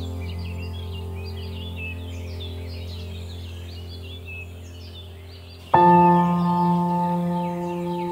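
Birds chirping over meditation music: a low held tone fades slowly, then a bell-like note is struck about six seconds in and rings on.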